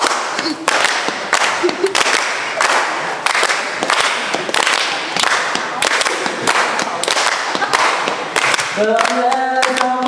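Crowd clapping together in a steady rhythm, about three claps every two seconds. Near the end, singing starts over the clapping.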